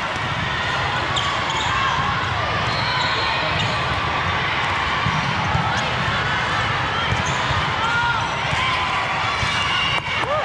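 Indoor volleyball rally echoing in a large hall: the ball being played, shoes squeaking on the court, over a steady din of many voices.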